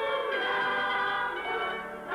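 Mixed choir singing held notes in harmony with instrumental accompaniment; near the end the sound dips briefly as one phrase gives way to the next.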